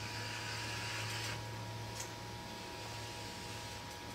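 A dry-erase marker drawn across a whiteboard in two long strokes, a soft scratchy hiss, over a steady low hum in the room.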